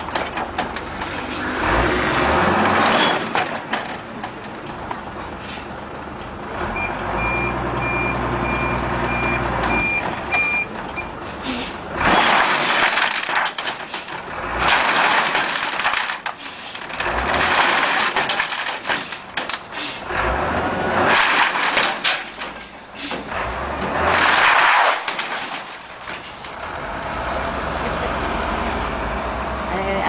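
Truck loaded with bamboo poles manoeuvring, engine running, with a reversing beeper sounding for a few seconds. Then come about five loud noisy surges a couple of seconds apart.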